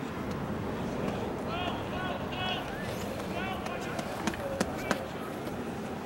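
Short distant shouts from rugby players calling on the pitch, over steady outdoor background noise, with three sharp clicks about four to five seconds in.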